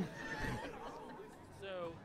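Soft laughter right after a joke's punchline, with a brief voice sound near the end.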